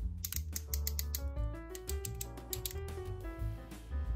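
Ratchet joints in a transforming robot action figure's knees clicking in quick runs as the leg is bent, over background music with a stepping melody.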